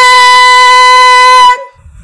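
A woman's voice singing one long, loud high note, steady in pitch, that stops about one and a half seconds in. It is a drill on attacking a high note with the energy set in advance, and the note holds its pitch with no problem.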